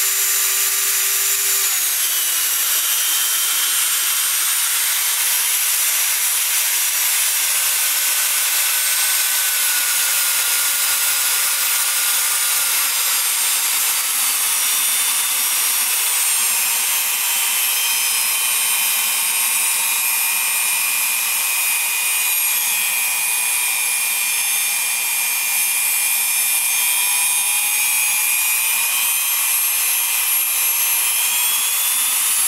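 Bosch router motor running freely with no bit in the collet, a steady high-pitched whine and hiss that holds at an even speed.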